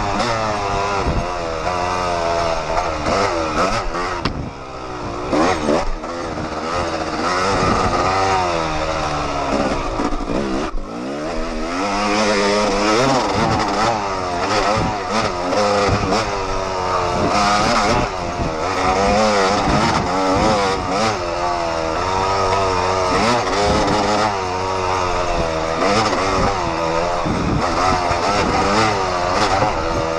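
Yamaha YZ250 two-stroke dirt bike engine revving up and down constantly under hard riding, with brief throttle lifts about four and eleven seconds in.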